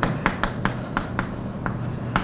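Chalk on a blackboard as letters are written: a quick run of short, sharp taps and scrapes.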